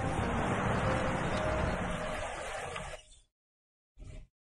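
A steady background noise with a low rumble and a few faint tones, fading out about three seconds in and cutting to silence.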